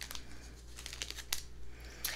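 Foil-wrapped tea bag sachets crinkling faintly as they are handled, with a few scattered crackles.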